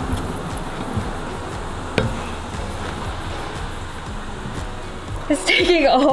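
Nutella sizzling steadily against a red-hot knife blade, with one sharp click about two seconds in. A voice comes in near the end.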